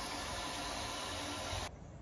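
Old pull-chain toilet flushing: a steady rush of water that cuts off suddenly about a second and a half in.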